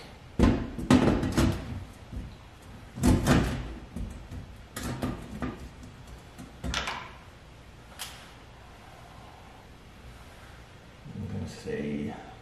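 Sheet-metal duct elbow being handled and pushed up against a ceiling: a series of hollow knocks and clunks, the loudest in the first second and a half and again about three seconds in, with fainter ones later.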